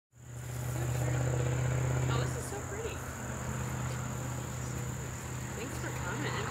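Outdoor ambience: a steady high-pitched insect trill over a low steady hum. Faint voices talk in the distance from about two seconds in.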